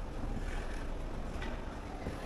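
Steady background noise of a large airport terminal hall, mostly a low rumble with a hiss over it and a few faint clicks.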